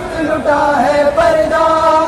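Voices chanting a noha, a Shia mourning lament, in long drawn-out held notes.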